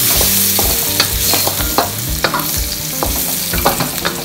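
Garlic and chili sizzling in hot oil in a steel wok, with a wooden spatula scraping and knocking against the wok at irregular moments as they are stir-fried.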